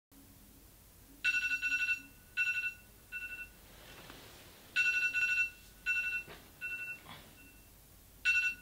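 Smartphone alarm going off: a high electronic tone trilling in short bursts, in two groups that each start with a longer loud burst and then get shorter and quieter.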